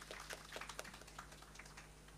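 Light applause from a small audience: irregular handclaps that thin out and stop near the end.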